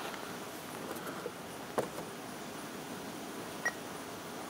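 Quiet room hiss with two faint clicks of handling, about two seconds apart; the later one carries a short high beep from the handheld barcode scanner.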